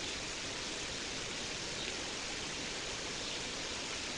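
Steady, even hiss of background noise with no distinct event.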